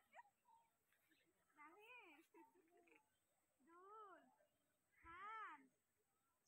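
A faint, high-pitched voice calling three times, about a second and a half apart, each call drawn out and rising then falling in pitch.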